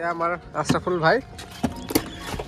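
Two short drawn-out vocal exclamations with sliding pitch, followed by two sharp clicks near the end.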